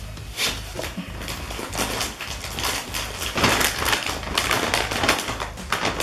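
Plastic aloo bhujia snack packet crinkling and rustling as it is handled, in a dense run of irregular crackles.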